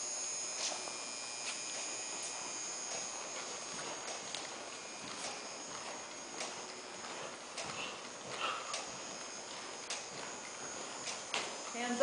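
Hoofbeats of a walking horse on the soft dirt footing of an indoor riding arena, faint, irregular taps about once a second, over a steady high hum.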